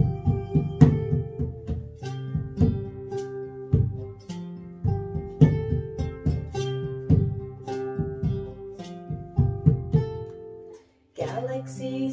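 Nylon-string classical guitar playing a plucked instrumental passage, with a salt grinder shaken as percussion over it. The music stops briefly near the end, then a woman's singing comes in.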